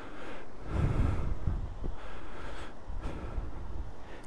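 A person breathing close to the microphone, two soft breaths, with a low wind rumble on the microphone about a second in.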